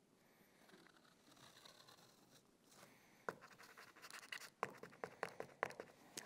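A paint marker scratching across carpet backing as a cutting line is drawn around a board. It is faint at first, then comes a quick run of short, sharp scratching strokes in the second half.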